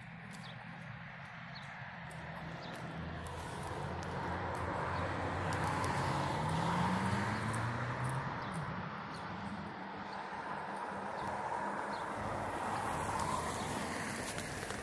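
Road traffic: a passing vehicle's noise swells to a peak about halfway through, eases off, then builds again near the end.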